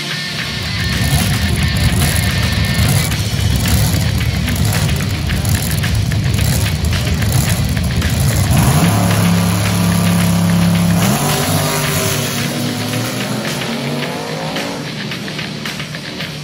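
Vintage drag cars' engines running loud and rough, then a rising engine note about halfway through as a car revs and pulls away down the strip.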